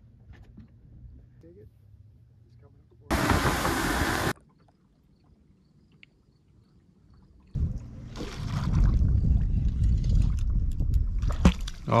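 A loud, sudden rush of hiss lasting just over a second about three seconds in, then from past the halfway point a heavy, low rumbling noise of water and wind around a fishing boat on the lake.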